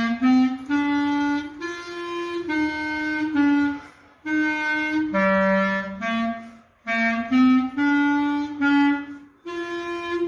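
Clarinet and alto saxophone playing a simple march melody together as a beginners' duet, in short phrases of held notes. The phrases break off briefly about four and seven seconds in and again near the end.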